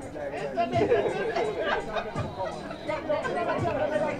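Several people's voices talking and calling out over one another, an overlapping chatter.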